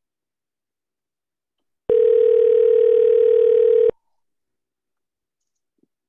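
Ringback tone of an outgoing phone call: one steady two-second ring about two seconds in, the other line ringing unanswered.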